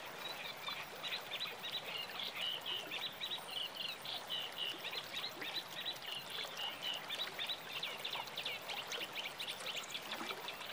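Nature ambience: a steady rush like running water, with a dense, continuous chatter of short chirping animal calls, several a second.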